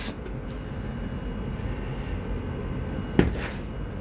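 Steady low room rumble with no speech, and one short louder sound about three seconds in.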